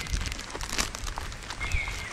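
A plastic bag crinkling as it is handled close to the microphone, in small irregular crackles.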